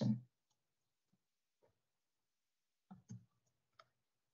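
Near silence, broken near the end by a few short, faint clicks around the moment the presentation slide advances.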